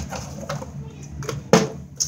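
A single sharp thump about one and a half seconds in, with faint voices underneath.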